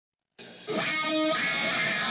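Intro music starting after a brief silence, growing louder within the first second and then holding steady with sustained notes.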